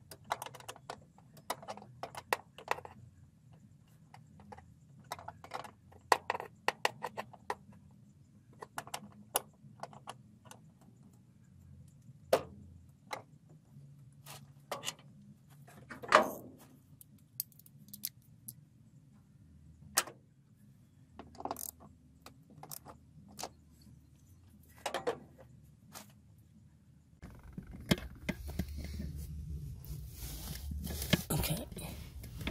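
Irregular metallic clicks and clinks of hand tools and parts being worked on a pickup truck's clutch hydraulics, a few a second, with one louder clink about halfway through. Rustling handling noise takes over near the end.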